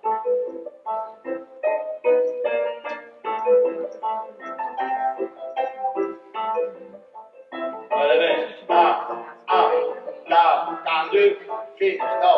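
Piano playing a ballet class accompaniment: clear single notes and chords in a steady dance rhythm. From about eight seconds in, a man's voice calls or sings along over the piano.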